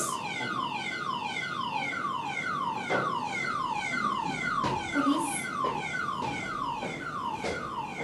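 Car alarm sounding: a falling electronic whoop repeated quickly, about two and a half times a second, with a few faint knocks among it.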